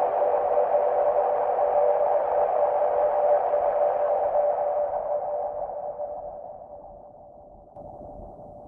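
Electronic synthesizer drone: a noisy, steady-pitched band with held tones, growing duller and quieter from about five seconds in and fading out near the end as the piece closes.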